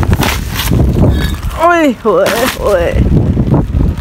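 Wind buffeting the microphone in a rainstorm, a heavy low rumble with sudden loud bursts of noise early on. A voice calls "oye" twice.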